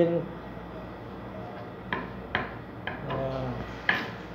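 Kitchen knife chopping tomato on a wooden cutting board: about four separate sharp knocks of the blade on the board in the second half.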